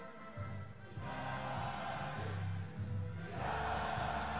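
A national anthem played at a stadium, with a crowd and choir-like voices singing along; the sound swells about a second in.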